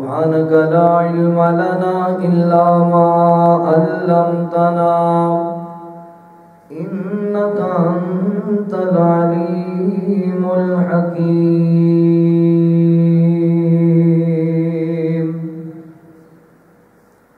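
A man chanting in long, drawn-out melodic phrases. There are two phrases with a short break about six and a half seconds in, and the second ends on a long held note.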